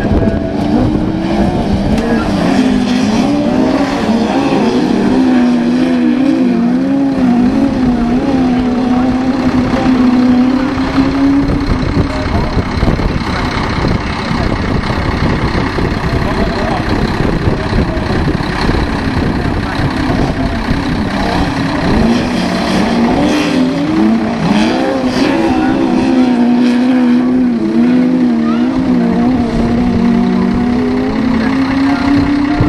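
Autograss race cars' engines running hard on a dirt track, several at once, their pitch rising and falling as they rev. The engine note is weaker through the middle and stronger again in the last third.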